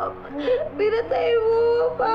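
A woman whimpering and crying out in distress: drawn-out, wavering cries, the longest held for about a second in the second half.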